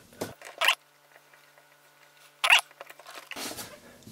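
A few short rustling scrapes of handling noise, the loudest about two and a half seconds in, with quiet gaps between them.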